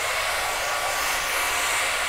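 Handheld electric hair dryer running steadily: an even rush of blown air with a faint steady whine.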